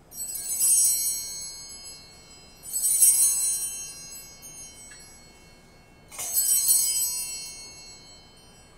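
Altar bells (sanctus bells) rung three times, each a bright, high shimmering peal that fades over a couple of seconds. This marks the elevation of the consecrated Host.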